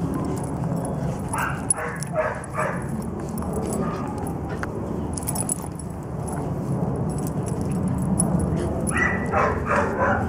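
Small dogs playing with toys, letting out a quick run of four short barks about a second and a half in and another short run near the end.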